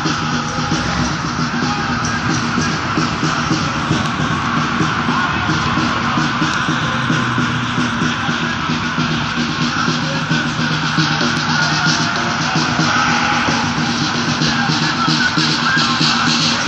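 Loud, continuous music from an African church congregation dancing around their building.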